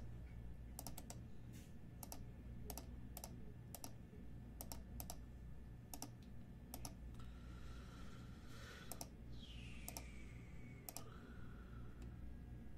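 Faint, irregular clicks of a computer keyboard and mouse being worked, single sharp clicks every half second or so, thinning out after about seven seconds.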